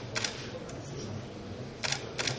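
Camera shutter clicks, two of them about a second and a half apart, over a low steady room background.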